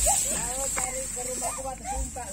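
Indistinct voices talking quietly, with a steady high-pitched whine underneath.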